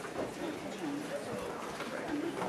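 Indistinct murmur of many voices talking at once in a hall, with no band playing.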